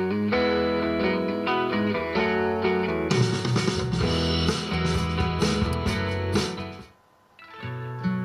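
Guitar music. It drops out briefly about seven seconds in, then comes back.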